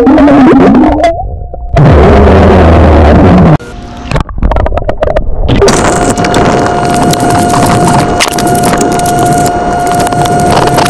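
A man burping underwater. It is a long, low, loud burp that cuts off abruptly about three and a half seconds in. After that comes a steady underwater hiss with a faint high steady tone.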